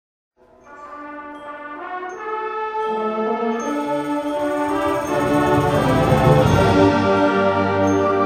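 Middle school symphonic band beginning a piece: sustained wind and brass chords enter about half a second in and swell steadily louder over the next several seconds.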